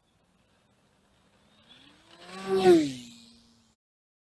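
A single whoosh sound effect like something passing by. A pitched hum rises and then falls while a hiss swells, peaks about two and a half seconds in, and fades out, with silence on either side.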